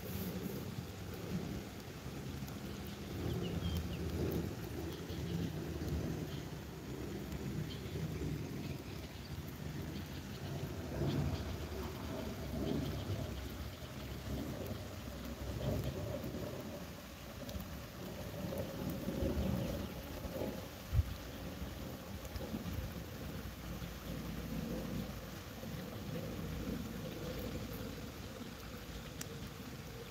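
Wind buffeting a phone's microphone outdoors: a low, uneven rumble that swells and fades throughout, with a single sharp thump about two-thirds of the way through.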